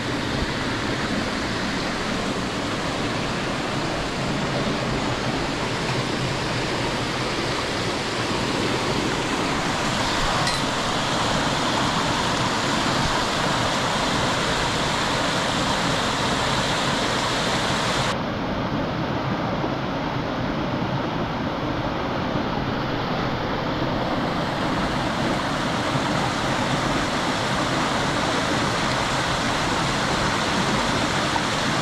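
Steady rush of water from a rocky stream tumbling over small cascades. Its tone shifts abruptly twice, about ten seconds in and again a little past the middle, when the hiss at the top drops away.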